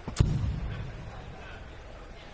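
A steel-tipped dart striking a Winmau bristle dartboard once, about a quarter second in: a sharp thud followed by a short low boom, over a faint steady background.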